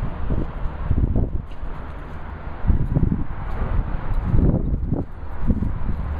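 A man retching and heaving, several low guttural heaves at uneven intervals, over a steady low rumble.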